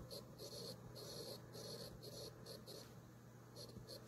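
Stylus nib scratching across a Galaxy Tab S7+ screen while writing by hand: a quick run of short, faint scratchy strokes, a pause, then two last strokes near the end.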